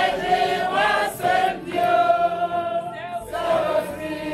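A group of women singing a song together in unison, holding long notes with short glides between them.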